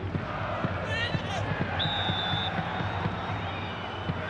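Football stadium crowd noise with supporters' drum beats and chanting, and a short referee's whistle blast about two seconds in, stopping play.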